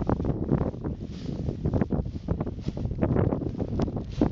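Wind buffeting the microphone, with repeated irregular swishes and swats of a twig broom beating out burning dry grass.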